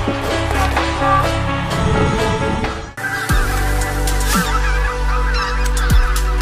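Instrumental music, then a short break and a flock of geese honking and chattering over quieter background music from about halfway through.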